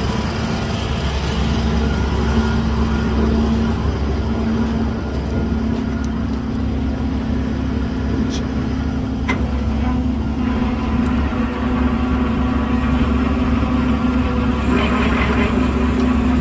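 Flatbed tow truck's engine idling steadily, a low even hum with one constant tone, with a few faint clicks in the middle.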